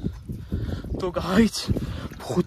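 Water splashing and sloshing as a fine net full of small fish is drawn through a shallow, muddy pond, with fish thrashing at the surface in irregular splashes. A short wordless vocal sound comes about a second in.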